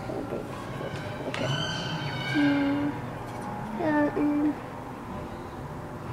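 Children's wordless vocal sounds: a high drawn-out 'ooh'-like call starting about a second and a half in, and a wavering hum about four seconds in.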